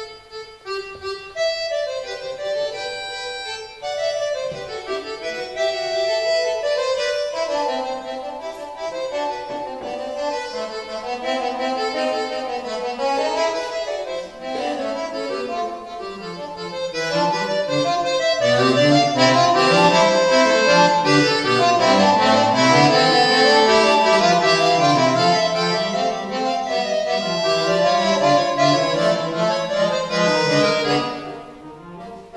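Roland V-Accordion, a digital accordion, played solo in a polyphonic piece, likely the opening fugue of the player's own three-part work. It starts sparse in the treble and grows fuller and louder as lower lines come in about eighteen seconds in.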